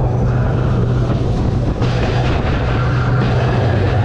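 Roller coaster train running along the track, a steady low rumble with a rushing hiss that swells about two seconds in.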